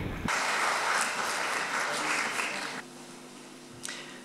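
Audience applauding for about two and a half seconds, then stopping fairly abruptly.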